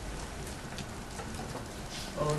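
Steady background hiss of room noise, with a few faint clicks.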